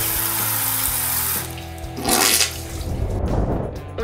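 Handheld shower head spraying water in a steady hiss that cuts off about a second and a half in, followed by a second short burst of hiss about two seconds in. Background music plays underneath.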